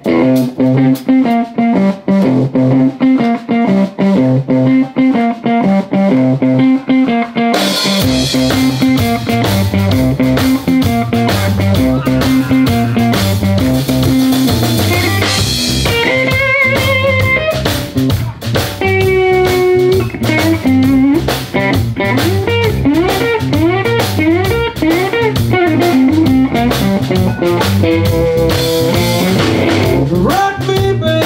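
Live blues band playing: an electric guitar riff over bass guitar. The drum kit joins about eight seconds in, and later the guitar plays lead lines with bent notes over the band.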